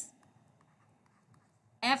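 Faint ticks and scratches of a stylus writing on a tablet, in near quiet between spoken words; a woman's voice trails off at the start and resumes near the end.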